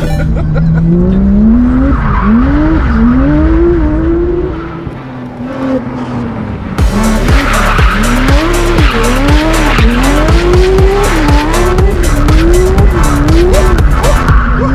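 Porsche 992 GT3 RS's naturally aspirated flat-six rising from idle, then revved up and down over and over, its pitch swinging about once every two-thirds of a second, with tyre squeal as the car slides around on the tarmac. About halfway through the sound changes from inside the cabin to outside the car, brighter and with more tyre noise.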